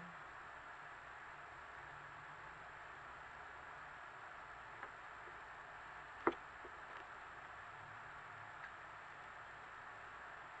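Steady faint hiss with a few soft clicks of a tarot deck being cut and handled on a cloth-covered table. The sharpest click comes about six seconds in.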